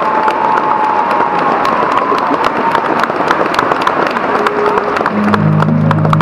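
Theatre audience applauding and cheering, a dense spatter of claps at the end of a song. About five seconds in, the music comes back in with low held notes under the applause.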